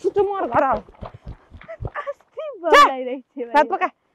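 Women's voices shouting and crying out as they scuffle, in short broken calls; the loudest, highest cry comes near three seconds in, rising and then falling in pitch.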